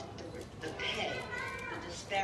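Indistinct voices talking off the microphone, with some high-pitched voices among them.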